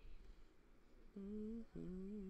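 A man humming a tune, starting about a second in: a held low note, a brief break, then a slightly lower note carried on.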